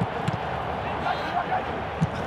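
Pitch-side sound of a football match: an even background haze with faint, distant shouting from players on the field, and a short knock about a third of a second in.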